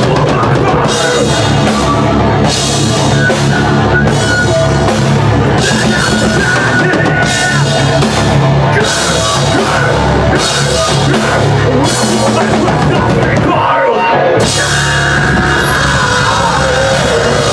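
Live thrash metal band playing loud, with electric guitars, bass and a drum kit whose cymbals come in repeated crashing washes. The band drops out for a moment near the end and comes straight back in.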